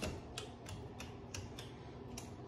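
A quick run of light clicks, about three a second and slightly uneven, over faint room noise.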